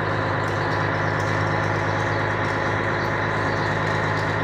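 Truck engine running steadily at low speed, heard from inside the cab as the truck rolls along a dirt road.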